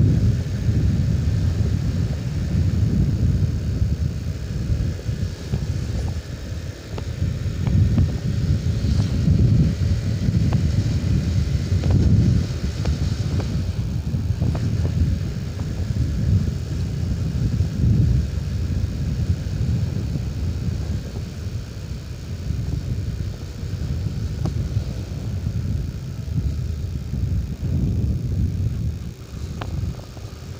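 Old Honda CB150R single-cylinder motorcycle being ridden, its engine mixed with heavy wind buffeting on the microphone into a low, uneven rumble that swells and dips.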